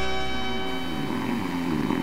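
Music: a held chord rings out and slowly fades, with steady bell-like tones and no beat.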